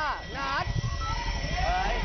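Excited high-pitched voices squealing and exclaiming in sharply sliding pitches, the loudest right at the start, over a low bass beat of background music.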